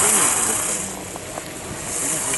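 Ski edges carving on hard snow in a giant slalom turn: a high hiss that fades about a second in and builds again near the end as the next turn starts.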